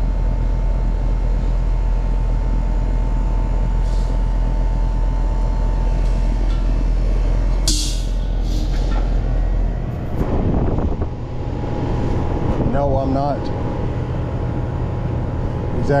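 Newly installed outdoor air-conditioning condensing unit running just after start-up, a steady low hum of compressor and condenser fan with a faint steady tone over it. A brief hiss comes about eight seconds in, and the hum turns uneven around ten seconds in.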